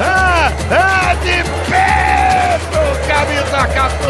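Music with a steady beat: a pulsing bass and regular ticks, under a high voice-like melody that swoops up and down in short phrases.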